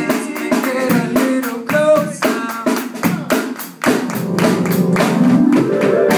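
Live reggae/ska band playing an upbeat instrumental with electric guitars, keyboard and drums on a steady beat. The music drops out briefly about four seconds in, then a rising note leads back in.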